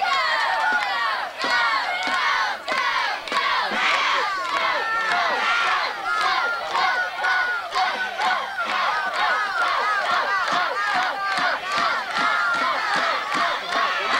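Football crowd yelling and cheering, many voices overlapping in a steady, unbroken din.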